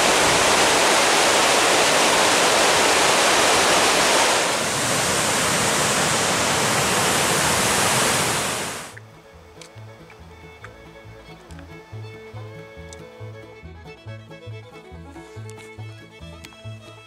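Loud, steady rush of water pouring down a concrete lake-overflow spillway, which cuts off about nine seconds in. Quiet background music with a steady plucked bass beat follows.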